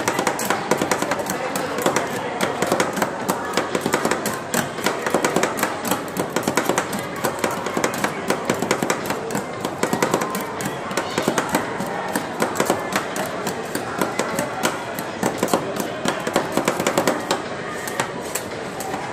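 Two metal spatulas chop rapidly at ice cream mixture on a frozen steel cold plate, several sharp metal-on-metal strikes a second in a steady clatter.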